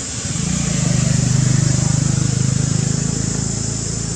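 A motor vehicle's engine running with a low, pulsing drone that swells to its loudest about a second and a half in, then slowly eases off.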